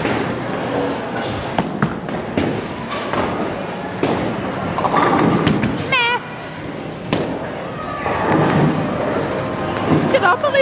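Bowling alley noise: a bowling ball rolling down the lane and knocking into pins, heard as several sharp thuds and clatters over a steady din of voices.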